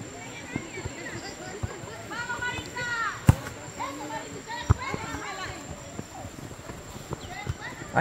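Distant voices of players and onlookers calling across an open football field, with two sharp thuds of a football being kicked, the first a little over three seconds in and the second about a second and a half later.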